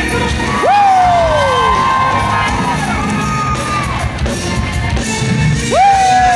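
Live gospel band playing, with electric guitar, drums and keyboard, and the crowd cheering. A lead line swoops up sharply and slides slowly down, once about a second in and again near the end.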